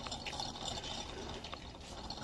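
Wire shopping cart being pushed across a hard store floor: a steady rolling rattle with a couple of light clicks.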